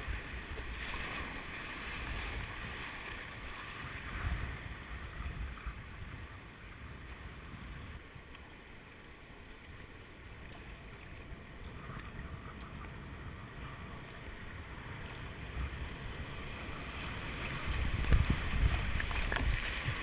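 Rushing river water and paddle splashes around a whitewater kayak, with wind buffeting the microphone. It eases on a calm stretch in the middle and grows loud again near the end as the kayak drops into a rapid.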